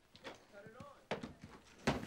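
A faint voice speaking briefly, then a couple of sharp knocks, the second just before the end.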